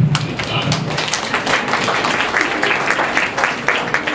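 Audience applauding: a dense patter of claps that starts abruptly and keeps up steadily for about four seconds.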